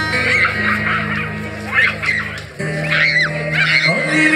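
Live band playing a song intro: sustained low chords, changing about two and a half seconds in, with short high rising-and-falling whoops from the crowd over them.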